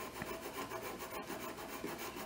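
A drawing stick scratching and rubbing across a large sheet of paper in quick, uneven repeated strokes.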